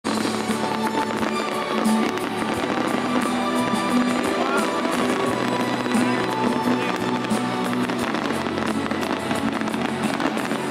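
Fireworks bursting and crackling in quick, irregular succession over loud music with long held notes.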